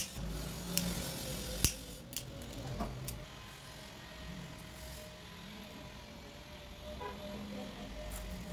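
A disposable lighter being struck: about four sharp clicks within the first three seconds. After that only soft handling noise, over a faint steady hum.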